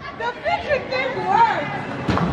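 People chattering; the voices are close by but the words can't be made out.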